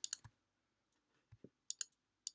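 Faint computer mouse clicks, a handful of short sharp ones spaced apart, as faces of a 3D model are picked one at a time in a selection.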